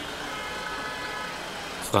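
Steady outdoor background noise of a crowd on foot with street sounds, with no sharp events; a man's voice starts right at the end.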